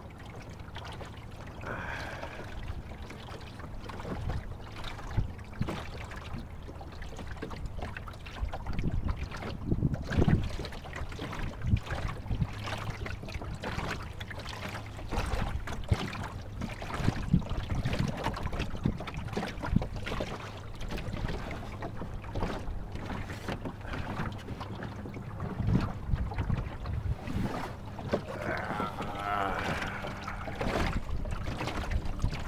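Water splashing and slapping irregularly against the hull of a small wooden sailboat under way in choppy water, with wind rumbling on the microphone.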